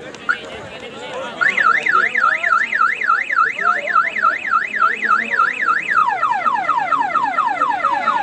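Electronic siren-style alarm tone warbling up and down about three to four times a second, then about six seconds in switching to fast, repeated falling sweeps, over crowd chatter.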